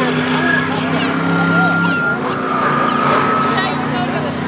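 Monster truck's supercharged V8 engine running steadily, its note changing about halfway through, with people talking nearby over it.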